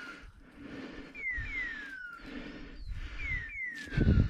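High whistled notes falling in pitch, in pairs that repeat at an even pace about every two seconds, over footsteps crunching through dry leaves and undergrowth.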